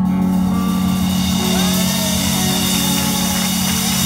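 Live rock band holding the song's closing chord: a sustained low note under a wash of crashing cymbals, with a few sliding pitched notes over it.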